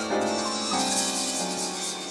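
Recorded multitrack improvised music: a sequence of pitched notes, changing about every half-second to second, over a pulsing high rattle.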